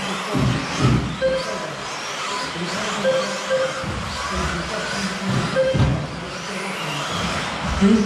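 Electric 1/10 scale 2WD off-road RC cars racing on an indoor track, their motors whining up and down in quick repeated rises and falls as they accelerate and brake. Short beeps sound several times over the racket.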